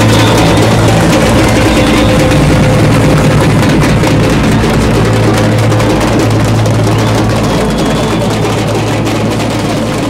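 Carnival street-bloco drum corps (bateria) playing loud, dense percussion on surdo bass drums and snares, over a steady low hum.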